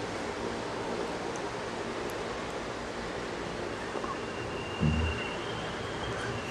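Steady background hiss with a faint low hum, and a brief low hum of a voice about five seconds in.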